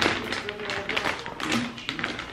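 A string of light, irregular taps and knocks from kitchen utensils working chicken in a pan or on a board, over faint background music.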